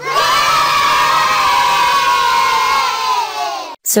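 A group of children cheering together in one long drawn-out shout that falls slightly in pitch and cuts off abruptly near the end.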